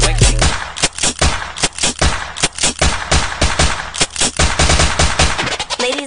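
Rapid machine-gun fire sound effect in a dance track's soundtrack, about six shots a second, taking over when the beat drops out about half a second in.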